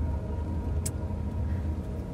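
Steady low rumble of road and engine noise inside a moving car's cabin, with one brief high click a little before the middle.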